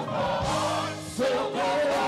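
Gospel choir singing with lead singers on microphones over instrumental backing; a stronger sung line comes in just past the middle.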